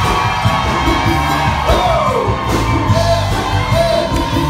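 Live worship band music: a man singing into a microphone over bass notes and hand drums, his voice sliding down in pitch about two seconds in.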